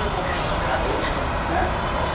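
Indistinct voices over a steady, fairly loud background noise, with no clear words.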